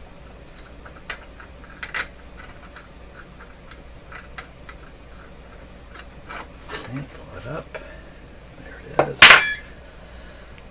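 Small clicks and light metallic taps as fingers handle dial cord against the metal radio chassis and its dial drum and pulleys, a few at a time. Near the end there is one short, loud rush of noise.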